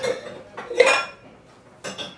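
A bowl clattering as it is handled on a table: a ringing knock a little under a second in, the loudest moment, and a shorter sharp knock near the end.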